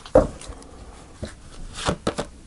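Tarot cards being handled on a cloth-covered table: a thump just after the start, a faint click about a second in, and a brief swish of cards near the end.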